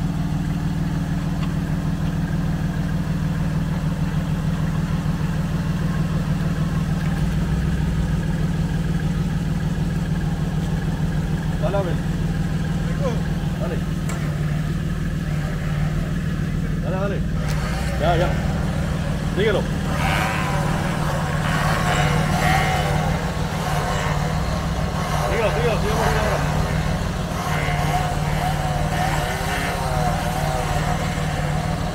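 A truck engine idling steadily. From about halfway through, indistinct voices call out over it.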